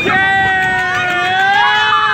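Riders on a swinging fairground ride letting out a long, held yell together that lasts about two seconds, over crowd noise.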